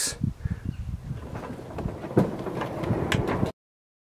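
Irregular low rumble of wind on the microphone with scattered light clicks and knocks. The sound cuts off abruptly to silence about three and a half seconds in.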